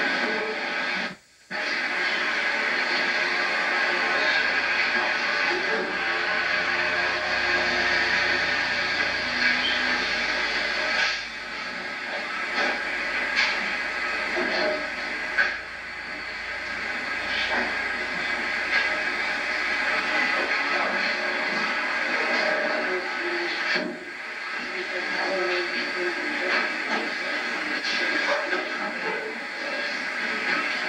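Worn videotape soundtrack: a steady hiss with indistinct voices under it. It drops out briefly about a second in, and a few faint knocks come later.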